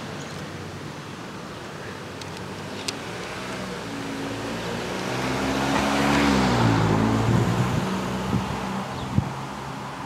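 A car driving past: engine and tyre noise swell to a peak about two-thirds of the way in, the engine's pitch dropping as it goes by, then fade away.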